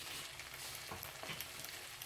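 Faint steady sizzling from fish and masala frying in coconut oil on a banana leaf in a pan, with a few small crackles about a second in.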